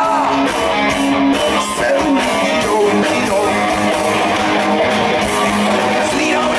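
Live rock band playing loudly, with guitars to the fore.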